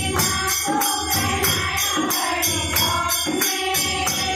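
A group of women singing a Hindi Mata bhajan together, kept to a steady beat by rhythmic hand-clapping.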